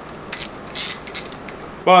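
Honda K24 intake VTC cam gear being turned by hand, its sprocket and timing chain giving brief metallic scrapes and clicks, one about half a second in and another just under a second in.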